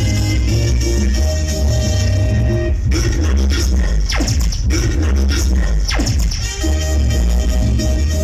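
Loud recorded music with heavy bass played through a large mobile disco sound system during a sound check. Between about three and six and a half seconds in, a few sharp sweeps fall steeply in pitch over the music.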